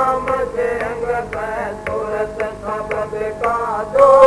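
A devotional Hindi shabad (Radha Soami hymn) being sung, with melodic held notes and a regular percussive stroke about twice a second.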